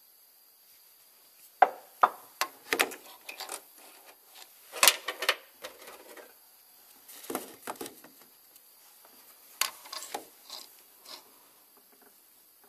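Irregular clinks, knocks and scrapes of metal parts being handled as a timing-belt idler pulley and its bolt are fitted onto the engine, in scattered clusters with short pauses between them.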